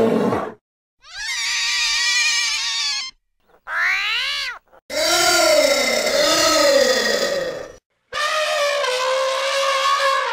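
A run of separate cartoon animal cries, cut back to back with short silences between them: a growl that stops just after the start, a high drawn-out cry, a short cry that rises and falls in pitch, and a long wavering call. Near the end comes an elephant trumpeting on a steadier tone.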